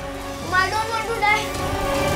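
A young boy crying out in distress, in a few high wails without words, over a held note of background music.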